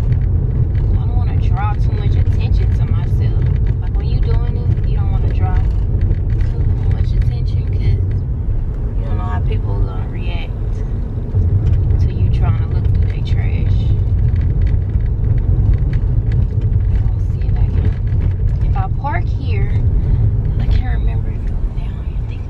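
Steady low rumble inside a moving car's cabin, from the engine and tyres on the road.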